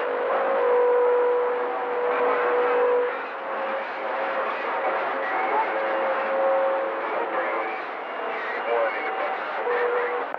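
Radio receiver static with several steady heterodyne whistles sliding in and out, the strongest one fading about three seconds in, and faint garbled voices of distant stations mixed into the hiss.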